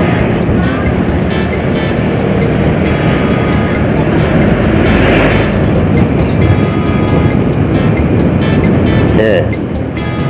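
Wind rushing over the microphone of a moving motorcycle, loud and uneven, mixed with road and engine noise, with background music underneath.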